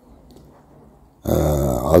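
A man's voice: a short pause in his talk with only faint room tone, then about a second in he resumes with a held, drawn-out vowel sound.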